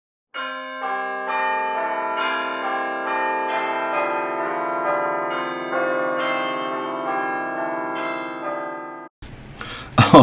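A run of bell chimes, a new stroke every half second or so, each ringing on and overlapping the next, cut off suddenly near the end.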